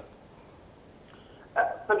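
A quiet pause with only faint line hiss. About a second and a half in, a man's voice starts over a Skype video-call link, thin and cut off in the highs.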